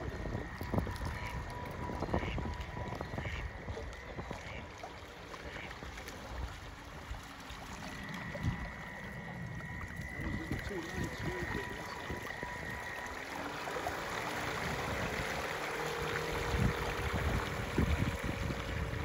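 Radio-controlled model lifeboat running across a pond, its motor giving a thin steady whine, with the hiss of water and the motor note growing louder near the end. Wind buffets the microphone.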